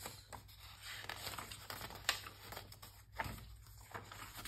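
Paper pages of a handmade junk journal being turned by hand: soft rustling broken by a few sharp page flicks, the loudest about two seconds in.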